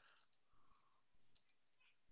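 Near silence with a few faint computer-keyboard keystrokes.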